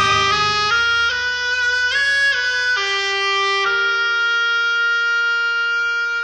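Instrumental passage of a 1980s Hindi film song: a solo melody of held notes, stepping up and down in pitch, the last note held for about two and a half seconds before the fuller accompaniment returns.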